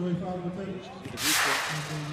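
A broadcast transition swoosh: a loud rush of noise lasting about a second, starting a little past the middle and cutting off sharply as the picture cuts to the next shot. Voices are heard faintly underneath.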